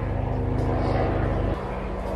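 A steady low droning hum made of several held pitches, which cuts off suddenly about one and a half seconds in.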